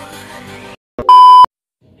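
Background music stops short, and after a brief silence a single loud electronic beep follows: one steady, high, pure tone just under half a second long.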